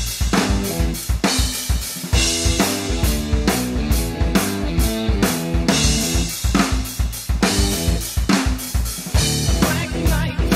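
Drum kit with a 24-inch bass drum whose front head has no port hole, a snare and Paiste cymbals, played in a driving early-70s hard-rock groove of steady, even strokes. It runs over a backing riff of pitched low notes.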